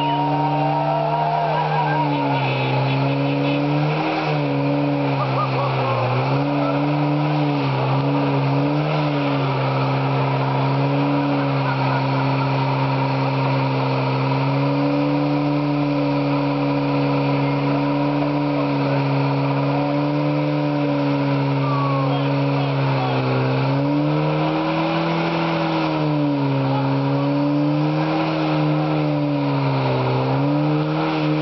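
Nissan 240SX (S14) engine held at high revs through a stationary burnout, the spinning rear tyres scrubbing against the pavement. The revs hold steady for long stretches and dip briefly a few times before climbing back.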